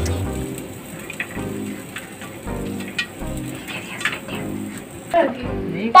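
Popcorn kernels popping inside a closed aluminium pressure cooker on a gas stove: scattered, irregular sharp pops.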